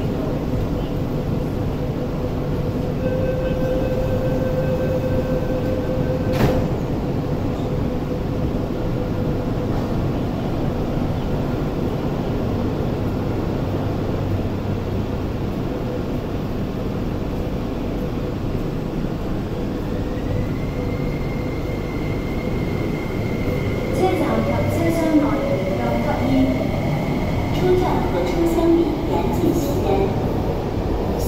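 MTR Tuen Ma Line electric train at a station platform: a steady rumble, with a held tone for a few seconds ending in a clunk early on. From about two-thirds of the way in, the traction motors give a rising whine as a train accelerates.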